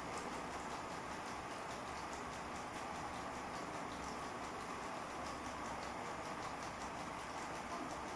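Steady, faint hiss of room and recording noise, with no distinct sound event.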